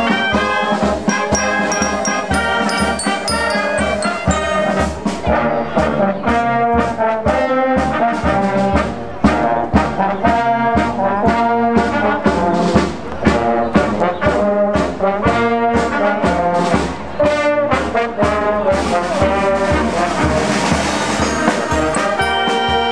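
Town wind band playing: clarinets, saxophones, trumpets and trombones together, with bell-like glockenspiel notes in the first few seconds and a steady beat of about two a second.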